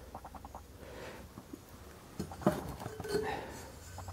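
Quiet handling noises of metal engine parts being moved: faint ticks, a couple of light knocks about two and a half seconds in, and a brief scrape just after three seconds.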